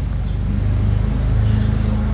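Lawn mower engine running steadily in the background, a low, even drone.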